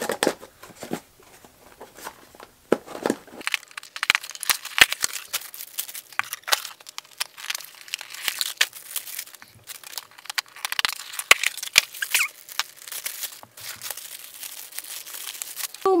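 Packaging being unwrapped and torn open by hand: irregular crinkling, rustling and tearing, with many sharp crackles, as a boxed beauty gift set is unboxed.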